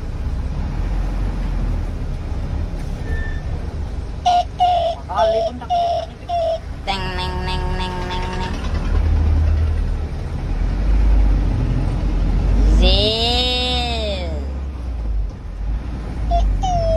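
Vehicle engine running, with electric horns worked from a dashboard switch panel: a string of short toots about a quarter of the way in, then a held chord of several notes, and later one long wail that rises and falls like a siren.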